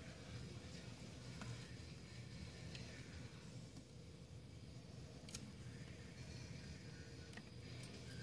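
Near silence with a low room hum and a few faint clicks of small steel parts handled in a shotgun's stamped receiver, the clearest about five seconds in.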